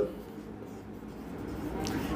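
Faint sound of a marker pen writing on a whiteboard.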